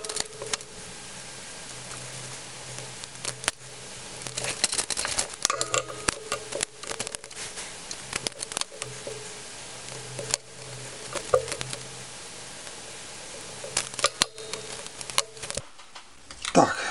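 Small clicks and taps of hands handling electronic parts and tools on a workbench, over a steady low hum that stops and restarts a few times.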